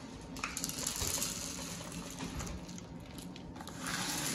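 Cheerios pouring from a plastic cereal dispenser into a plastic measuring cup: a dry, steady rattle of many small pieces, heaviest in the first couple of seconds.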